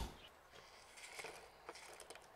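Near silence with a few faint, soft clicks as walnut pieces are tipped from a wooden bowl into a stone mortar, landing about a second in and near the end.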